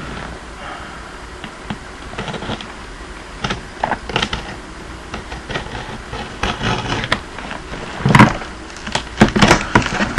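A large cardboard box being cut open and its flaps handled: scattered scrapes and rustles of cardboard and tape, with a louder knock about eight seconds in and a quick run of clicks and knocks near the end.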